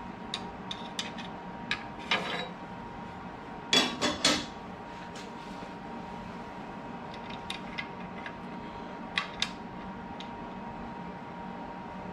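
Light metal clicks and clinks as parts of a Shopsmith lathe duplicator are handled and set in place, with a louder cluster of clanks about four seconds in, over a steady background hum.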